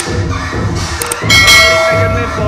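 Subscribe-button sound effect: a couple of quick clicks about a second in, then a bell ringing, over background music.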